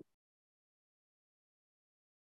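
Near silence on a gated conference-call line, with one very short faint blip at the very start.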